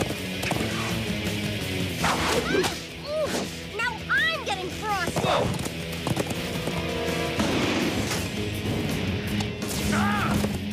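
Cartoon action soundtrack: music with whip cracks and swooshing effects as a rider lashes a charging beast. The sharpest cracks come about two seconds in and again about five seconds in.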